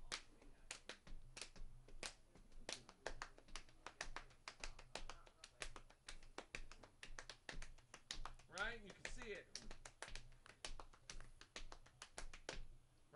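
Hands tapping out a drum groove's rhythm, several sharp taps a second with accented beats, as practice for locking in the pattern. A short burst of voice comes about nine seconds in.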